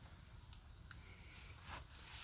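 Near silence: a low steady rumble with two faint ticks, one about half a second in and one just under a second in.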